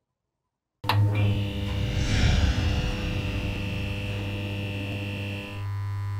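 Electric-buzz sound effect for a neon-sign logo. A sharp click starts it after a moment of silence, then a steady low electric hum with a high whine over it, like a neon tube switching on and buzzing. The whine drops out near the end while the hum goes on.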